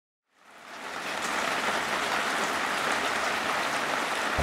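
Steady rain falling, fading in from silence over about the first second.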